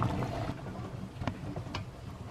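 A pot of palm-sugar syrup with cassava and banana chunks bubbling at a boil, with a few sharp pops from bursting bubbles.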